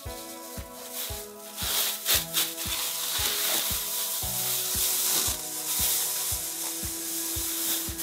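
Thin plastic masking film crinkling and rustling as it is spread and pressed by hand, growing denser through the second half. Under it runs background music with a steady beat, nearly two beats a second.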